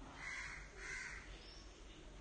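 A bird calling faintly, twice, within the first second or so.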